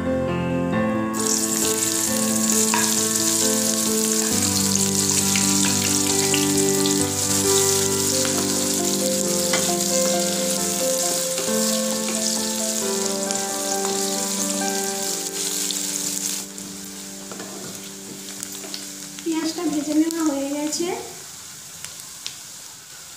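Sliced onions dropped into hot oil in a steel pan and frying with a loud, steady sizzle that starts about a second in and cuts off abruptly about three quarters of the way through. Background music plays throughout.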